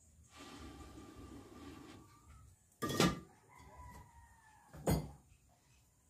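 Breath blown through a blow pipe into a wood cooking fire, a steady rushing for about two seconds. Then two sharp knocks about two seconds apart, with a rooster crowing once in the background between them, one long falling call.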